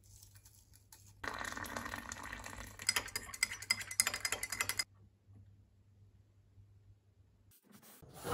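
Water poured into a glass mug, then a teaspoon stirring and clinking rapidly against the glass for about two seconds.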